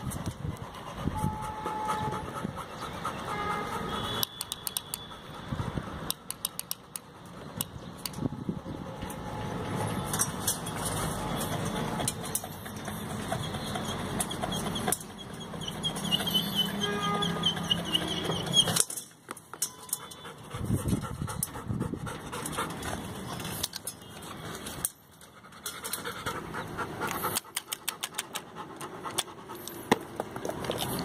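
A black Labrador panting as it climbs along a metal ladder obstacle fitted with tyres, with scattered short clicks and knocks throughout and one louder knock about two-thirds of the way through.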